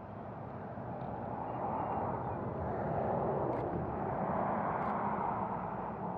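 A vehicle passing by, its tyre and engine noise swelling over a couple of seconds and then fading.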